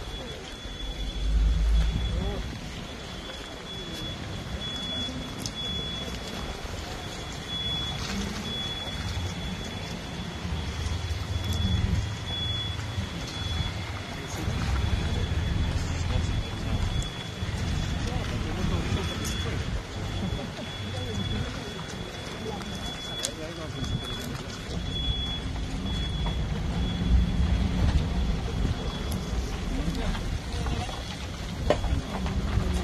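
Street noise of vehicles running and a low rumbling, with indistinct voices in the background and a faint steady high-pitched whine.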